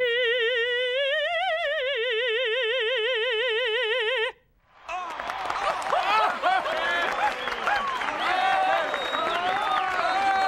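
A mezzo-soprano singing one long operatic note on the short 'i' vowel of 'sit', with wide vibrato, for about four seconds before it cuts off. After a short pause a crowd of voices cheers.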